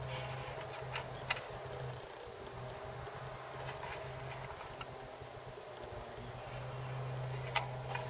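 A plastic solar charge controller handled in the hands, with two sharp clicks, one about a second in and one near the end, over a steady low hum from the background.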